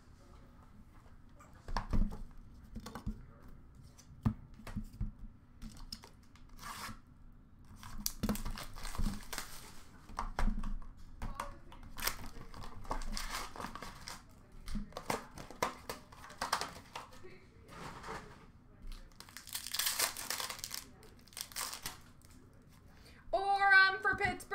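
2023-24 Upper Deck Artifacts hockey card pack wrappers being torn open and crinkled, with cards handled in between: irregular rustles and crackles, the loudest and longest tear near the end.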